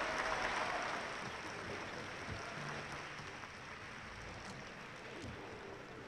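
Concert-hall audience applauding, loudest at the start and slowly dying away.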